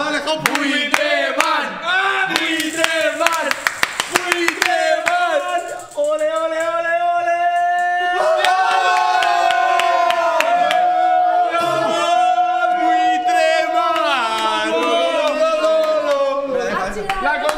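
Prize wheel spinning, its pointer clicking rapidly against the pegs, the clicks thinning out over about four seconds as the wheel slows, amid excited voices. Then a group of people breaks into long, drawn-out shouts and cheers that run on to the end.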